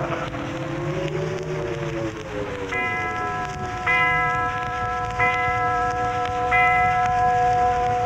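Studio orchestra playing a short scene-change bridge with a melody rising and falling. It settles into a held chord while a chime is struck four times, about once every second and a quarter.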